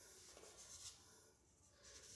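Near silence: room tone with a faint rustle in the first second.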